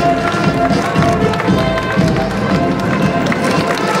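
A marching band playing a march, over the murmur of a crowd and the steps of marchers.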